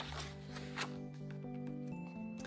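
A paper picture-book page being turned, a brief rustle near the start, over soft background music of slow held notes.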